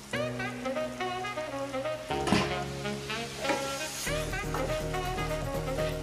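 Background music over chopped pork and onions sizzling in a pan as a wooden spatula stirs them.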